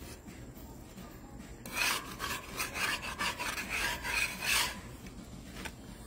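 Wooden and plastic spatulas scraping and rubbing across a flat iron tawa while a dal puri roti is turned over, a run of rasping strokes from about two seconds in until nearly five seconds.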